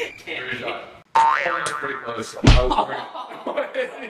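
Voices, then, just after a cut about a second in, a springy rising boing sound effect, and a heavy low thud about two and a half seconds in, the loudest sound.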